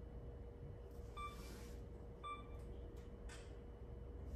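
Two short electronic beeps about a second apart from a digital camera, set off by a Bluetooth remote clicker, over faint room tone with a steady low hum and a brief soft hiss.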